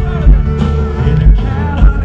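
Live country band playing loud through a concert PA, with pedal steel and electric guitar over a kick drum that lands about twice a second; some of the lines glide and bend in pitch.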